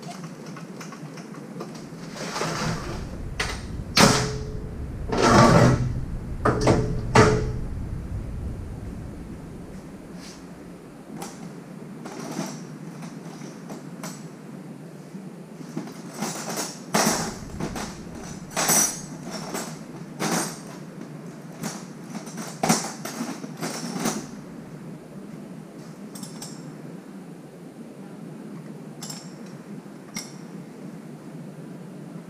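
Metal hand tools and parts being handled: scattered clanks and knocks in two clusters, the loudest a few seconds in, with quieter clinks later on.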